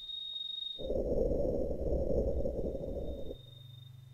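Synthesized noise from an Ableton Live noise-generator rack, a dull low rushing sound cut off above the midrange, runs for about two and a half seconds, then drops to a quieter low steady hum. A faint high steady tone sits behind it.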